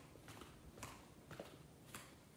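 Faint footsteps of a person walking at an even pace, about two steps a second, each a short sharp tap.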